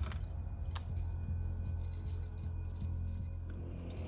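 A low, steady drone from a film's background score, with light, intermittent metallic jingling over it.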